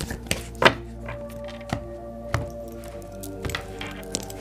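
A deck of cards being shuffled by hand: a scatter of short, soft clicks and flicks, the sharpest a little under a second in. Underneath runs soft background music with long held notes.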